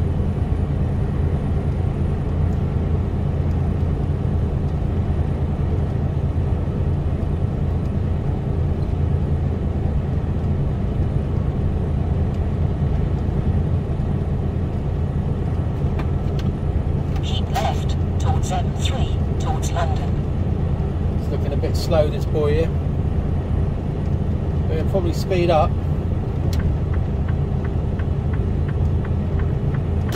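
Cab interior of a Mercedes Actros lorry cruising at a steady motorway speed: a constant low drone of diesel engine and road noise.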